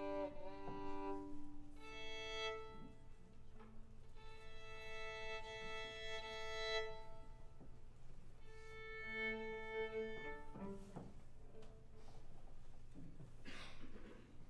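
Violin and cello tuning before a piano trio performance: long, steady bowed notes on the A, held one at a time with short pauses between, and open-string fifths sounded together.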